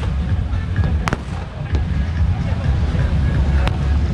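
Firecrackers going off in a few separate sharp bangs, about a second in, shortly after, and near the end, over a steady low rumble.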